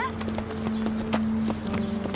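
A few light, irregular knocks over a steady held note of background music.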